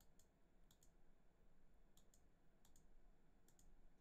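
Near silence: room tone with a handful of faint, sporadic clicks.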